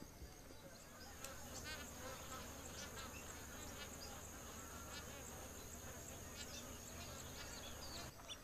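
Wetland ambience: a steady high-pitched insect trill with a faint low hum under it, and scattered short bird chirps.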